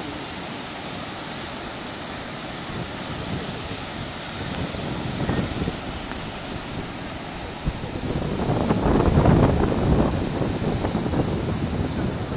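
White-water cascade of a mountain river rushing steadily into a deep gorge pool. Wind buffets the microphone, loudest from about eight to ten and a half seconds in.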